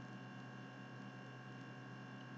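Faint, steady background hum of a voice recording, made of several steady tones under a light hiss, with no other events.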